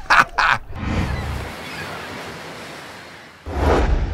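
Sea water sloshing and surging: two short splashy bursts at the start, a wash that slowly fades, and a fresh louder surge near the end.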